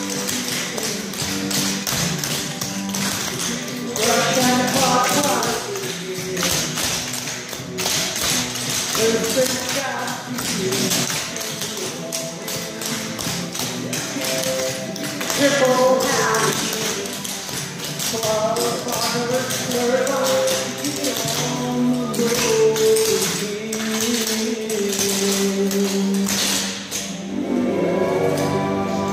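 Tap dancing: the metal taps on tap shoes strike a board floor in quick, rhythmic runs of clicks, over music playing throughout.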